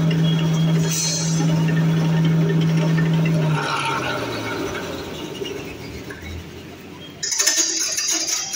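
Electric coconut husk shredder running empty with a steady hum, then winding down: about three and a half seconds in its pitch drops and the hum fades out over the next second. A sudden rustling clatter starts near the end.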